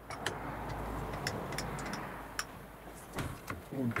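Light, scattered clicks and knocks over a low hum, from working a milling machine's table and digital readout while stepping round a bolt-hole circle.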